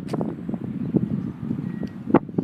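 Wind buffeting a handheld phone's microphone: a low rumble with small crackles.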